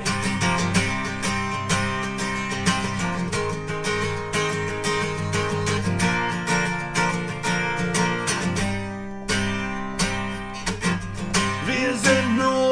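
Acoustic guitar strummed steadily through an instrumental passage between sung lines, with chords in a fast strumming rhythm; the playing thins briefly about nine seconds in.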